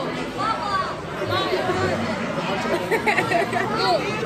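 Indistinct chatter of many voices talking at once in a busy restaurant dining room.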